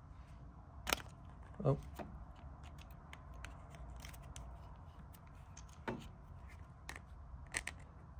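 A handful of small, sharp clicks and taps, the clearest about a second in and a few more near the end, from handling the adjustable stop slide of a cordless beading machine and a folding rule held against it.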